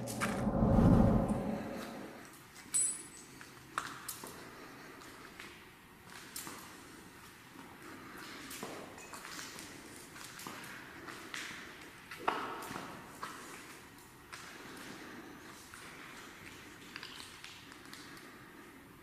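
A low, heavy thump in the first second or two, then scattered light knocks, clicks and rustles, the sharpest about three, four and twelve seconds in.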